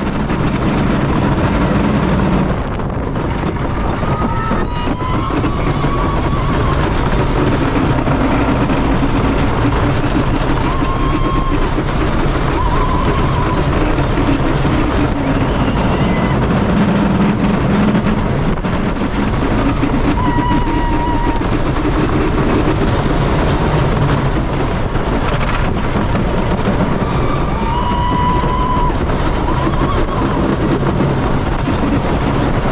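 Wooden roller coaster train running at speed on its wooden track, heard from on board: a loud, steady rumble and rattle throughout, with short higher-pitched notes now and then.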